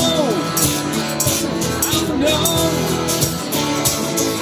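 Live band playing a rock song on acoustic guitars, with a man singing over a steady beat.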